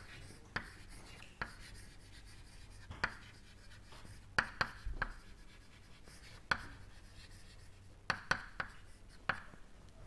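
Chalk writing on a blackboard: a string of irregular sharp taps and short scrapes as the chalk strikes and drags across the board, about a dozen in all.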